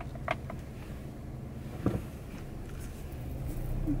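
Low, steady in-car rumble of a car being driven, heard from inside the cabin, with two small sharp clicks, one just after the start and one about two seconds in.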